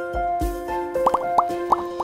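Cartoon bubble-pop sound effects over light, plinking intro music: a low swoosh near the start, then four quick rising plops in the second second.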